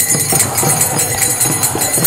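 Kirtan music: small hand cymbals (karatalas) ringing continuously over a quick, steady drum beat of about four strokes a second.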